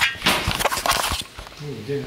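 A few sharp clicks and knocks in the first second or so, then a man's voice starting near the end.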